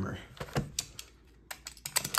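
A few light clicks and taps of handling: a cardboard hobby box being set down on a desk mat and a plastic box cutter being picked up.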